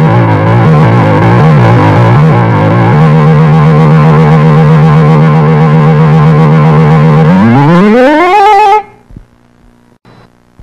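A loud, effects-processed TV logo jingle: for the first few seconds its notes wobble, then it holds one low note. Near the end the pitch slides steeply upward and the sound cuts off suddenly.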